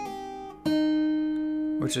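Capoed steel-string acoustic guitar fingerpicked. A note plucked just before fades out, then about two-thirds of a second in a new note is plucked and left to ring.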